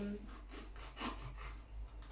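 Kitchen knife slicing through a green bell pepper onto a cutting board, in a quiet series of short cutting strokes, about three a second.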